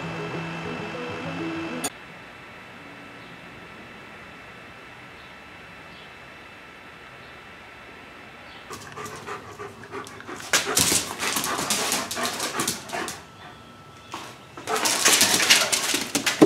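A short bit of music that stops about two seconds in. After a quiet spell, a dog is heard from about nine seconds in as a run of irregular, noisy bursts that come and go.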